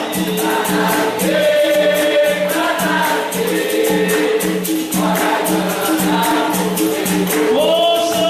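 Capoeira song in the São Bento rhythm: a group of voices singing over berimbau and pandeiro, with a steady low pulse and fast jingling percussion.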